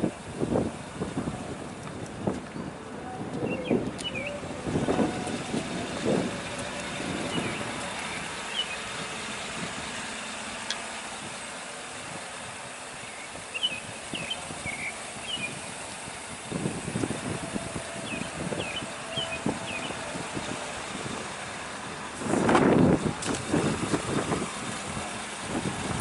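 Outdoor ambience with a vehicle running in the background, scattered short high chirps and irregular soft knocks; a louder burst of noise comes near the end.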